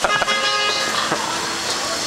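A vehicle horn sounds one steady note for about a second, over the hubbub of a busy street.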